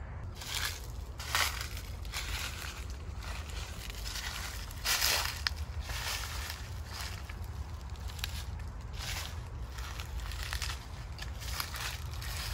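Footsteps crunching through dry fallen leaves and twigs, an irregular step about every second, the loudest about five seconds in, over a low steady rumble.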